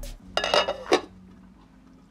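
Glass slow-cooker lid being set down onto the crock: a short scraping clatter as it settles, ending in a sharp clink about a second in.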